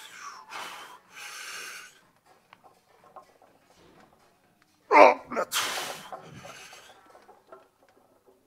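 A powerlifter's strained breathing and grunting late in a heavy barbell back-squat set taken to failure: two sharp exhalations near the start, a lull while he is down in the squat, then about five seconds in a loud grunt and a long forceful exhale as he drives the 120 kg bar back up.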